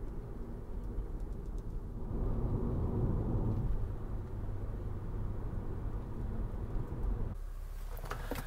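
Car cabin noise while driving slowly: a steady low rumble of tyres and engine that swells a little about two seconds in and drops off suddenly near the end.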